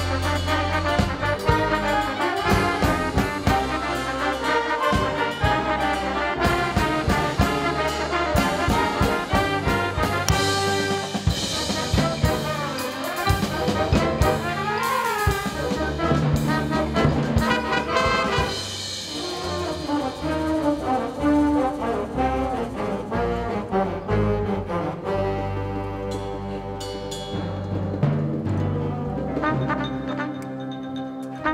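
Concert band playing: woodwinds, brass and percussion together, with the brass to the fore. A busy passage with rapid percussive strokes gives way after about ten seconds to more sustained chords, a little softer in the last third.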